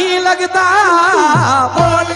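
Live qawwali music: a male voice holds and ornaments a long wavering note over a steady harmonium drone, with low hand-drum strokes coming in during the second half.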